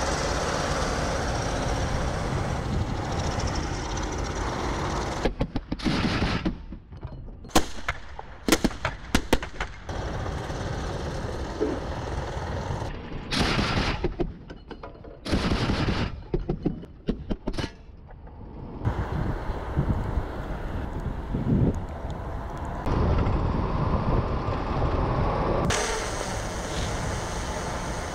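BTR-82 armoured personnel carrier's turret gun firing single shots and short bursts in two clusters, one about six to ten seconds in and one about thirteen to eighteen seconds in. Between and around them the armoured vehicles' engines run steadily.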